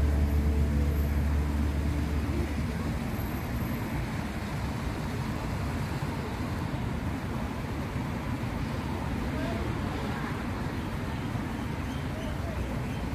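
Steady road traffic noise, with a low, steady hum that fades out over the first two seconds or so.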